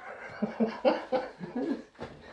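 Two men laughing.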